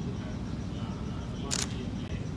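Steady low hum of a large conference room, with one brief, sharp click of noise about one and a half seconds in.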